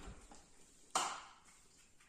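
A single sharp click or knock about a second in, with a softer thump at the start, as the black stand pieces of an artificial Christmas tree are handled and fitted together.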